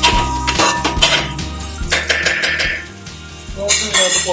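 A metal spoon clinking and scraping against a metal pan while stirring sliced onions in oil, with repeated clinks mostly in the first half, over background music.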